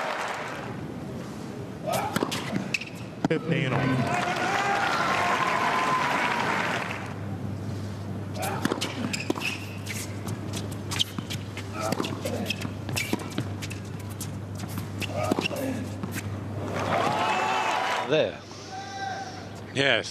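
Tennis match sounds: a burst of crowd applause and cheering with some voices a few seconds in. In the second half, a tennis ball is hit back and forth in a rally, giving a string of sharp pops from racket strikes and bounces on the hard court. A few voices follow near the end.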